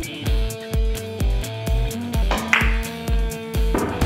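Background music with a steady beat, about two beats a second, and a brief bright hit about two and a half seconds in.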